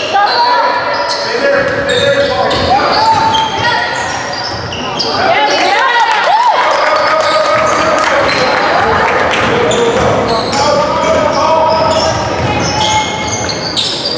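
Basketball bouncing on a hardwood gym floor during a game, with players and spectators calling out across the hall.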